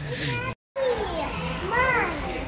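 Voices, including a young child's high-pitched voice, broken by a moment of dead silence at an edit cut about half a second in.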